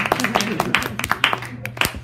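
A few people clapping in an irregular scatter of claps, with voices mixed in and a single low thump near the end.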